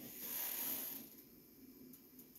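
A man's breath drawn in close to a microphone: a soft hiss lasting about a second.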